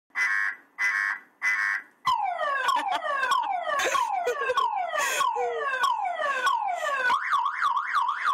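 Car alarm cycling through its tone patterns: three short steady blasts, then a run of falling whoops about twice a second, then a fast up-and-down warble near the end.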